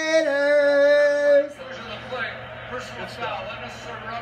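A fan's loud, long drawn-out shout of "Raiders!", held on one pitch and cut off about a second and a half in. Quieter TV game commentary follows.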